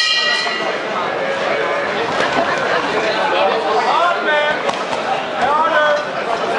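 Boxing ring bell struck once at the start, ringing on for about a second: the signal that the round begins. Spectators in the hall talk throughout, with a couple of shouts near the end.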